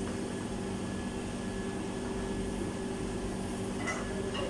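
Steady, even mechanical hum of commercial kitchen equipment, several low tones held without change over a faint noise.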